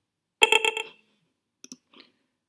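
A short electronic notification alert from an iPhone as a Telegram bot message arrives: a quick run of about four pitched pulses lasting half a second, followed by a few faint clicks near the end.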